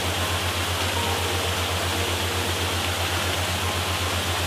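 Steady rushing of a waterfall, an even wash of falling water with a low, quickly pulsing hum beneath it.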